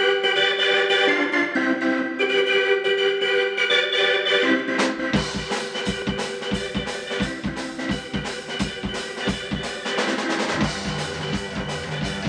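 Live rock band intro: an electronic keyboard with an organ sound plays sustained chords that change about once a second. The drum kit comes in about five seconds in with a steady beat, and a low bass line joins near the end.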